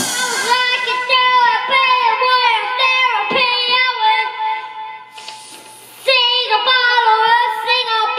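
A child singing long held notes into a microphone, each note dipping in pitch at its end. The singing stops briefly about five seconds in and starts again a second later.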